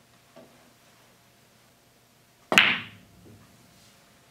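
Pool ball impact: a faint knock just after the start, then one loud, sharp clack about two and a half seconds in that rings briefly.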